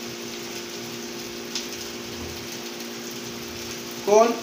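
Chopped carne asada sizzling steadily on a hot comal, an even hiss with a faint steady hum beneath it and a light click about one and a half seconds in.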